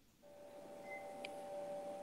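A faint steady two-note tone over a low hiss, starting just after the start, with a short higher beep and a click about a second in.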